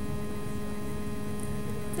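Steady electrical hum at an even level, with a faint hiss beneath it.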